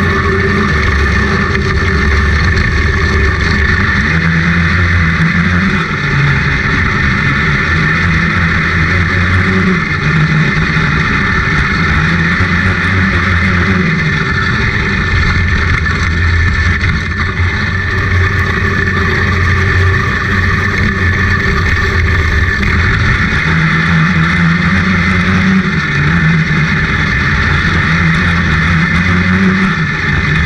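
A 500 Open outlaw kart's engine racing, heard loud from the cockpit. Its pitch rises and falls again and again as the kart accelerates and backs off through the turns of the dirt oval.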